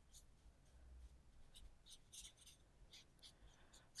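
Faint, irregular scratchy strokes of a size eight synthetic (faux) sable watercolour brush dragged across paper, its load of wash nearly spent so the strokes go dry and broken.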